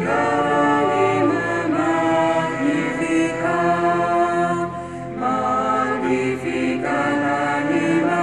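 A church schola (small parish choir) singing slowly, holding long notes phrase by phrase, with a short breath between phrases about five seconds in.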